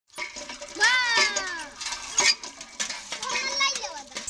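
Children's voices calling and chattering, with a sharp knock a little after two seconds in.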